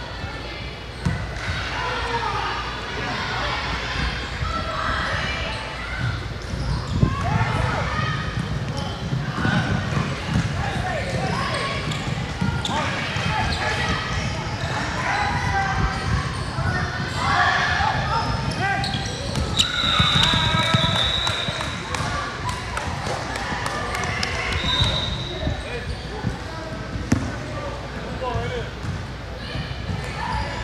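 Basketball being dribbled on a hardwood gym court amid indistinct voices. A referee's whistle sounds for about a second and a half a little past midway, then gives a short second blast a few seconds later.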